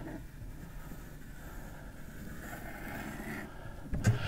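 Quiet, steady room noise with a low hum and no distinct events.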